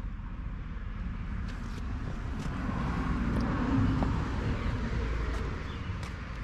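A car passing by, its noise swelling to a peak about four seconds in and then fading, over a steady low rumble.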